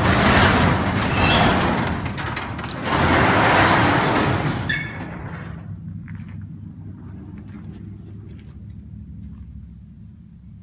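Garage door rattling loudly as it is opened, in two loud surges over the first five seconds, then a quieter steady hum and rattle as it keeps rising.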